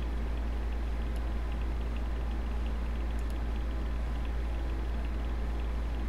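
Steady low hum with faint room noise, and two faint clicks about a second and three seconds in.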